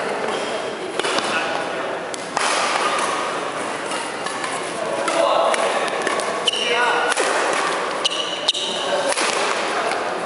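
Badminton rally in a large indoor hall: a string of sharp racket strikes on the shuttlecock, with brief high shoe squeaks on the wooden court, over background voices.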